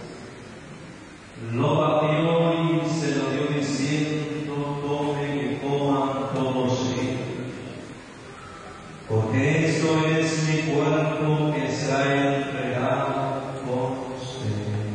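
Voices chanting a prayer in a slow, near-monotone intonation, in two long phrases: the first begins about one and a half seconds in, the second about nine seconds in.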